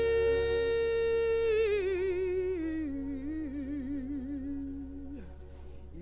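A single gospel voice holds a long high note, then slides down with a wavering vibrato to a lower note, which it holds until it breaks off about five seconds in. No accompaniment is heard under it, only a faint low hum.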